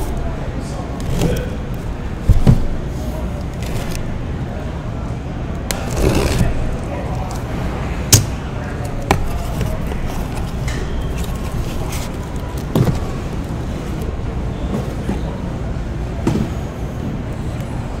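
Cardboard card boxes being handled and unpacked from a case: a handful of scattered knocks, taps and scrapes over a steady low background hum.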